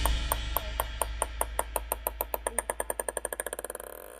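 A ping-pong ball bouncing on a wooden stool seat, its clicks coming faster and quieter until the ball settles, as the band's last notes fade out underneath.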